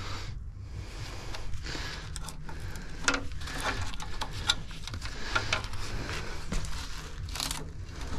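Crinkling and rustling with scattered small clicks from hands working on truck wiring and a connector, over a steady low hum.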